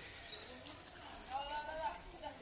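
Faint, indistinct voices in the background, with a short high-pitched call a little over a second in.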